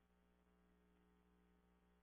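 Near silence: only a faint, steady electrical hum.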